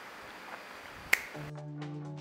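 One sharp finger snap over faint room hiss, followed about half a second later by background music with a steady bass note and plucked notes.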